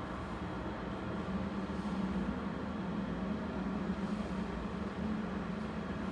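Large car elevator cab travelling in its shaft: a steady running drone with a constant low hum.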